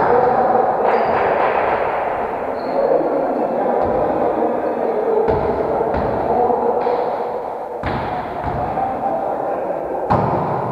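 A volleyball struck and bouncing on a wooden gym floor in an echoing sports hall: several sharp thuds a second or so apart, over a steady, dense background din in the hall.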